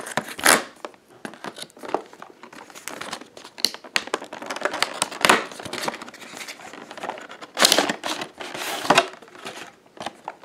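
Cardboard phone box being torn open along its perforated tear strip: an uneven crackling rip of paperboard, followed by the box and its packaging rustling as they are handled, with two louder bursts near the end.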